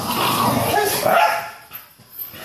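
Dogs whining and yipping excitedly as they greet a returning owner, mixed with a person's voice; the sound fades out after about a second and a half.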